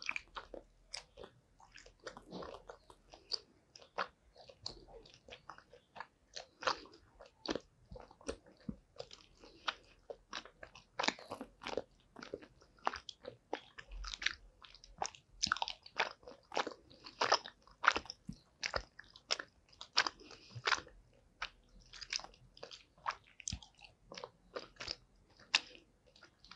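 Close-miked chewing of gummy candy: a steady run of sticky, wet mouth clicks and squelches, several a second and irregular in spacing.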